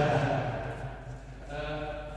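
A man's voice calling out in a drawn-out, held tone at the start and again near the end, in a large sports hall.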